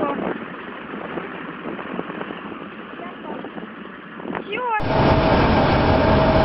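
Steady outdoor noise of a large wheeled tractor's engine working. Just under five seconds in, it cuts abruptly to a louder heavy diesel excavator engine running with a steady whine.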